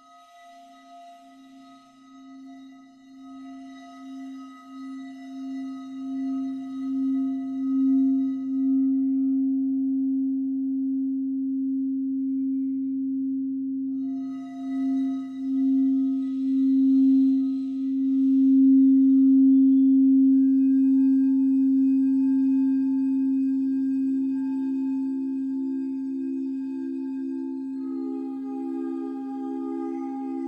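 Frosted quartz crystal singing bowl sung by running a mallet around its rim. It gives one deep, steady hum with a slow wavering pulse, swelling from faint to loud over the first several seconds, easing briefly about halfway, then swelling again. Near the end a second, slightly higher tone with a quicker pulse joins in.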